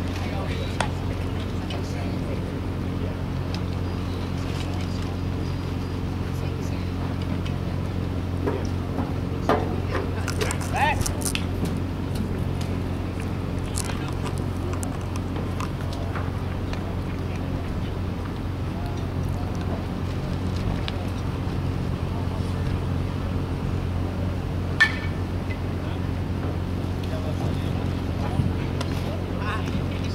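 Outdoor ballpark ambience: a steady low hum under faint distant voices, broken by a few short sharp knocks, one louder one near the end.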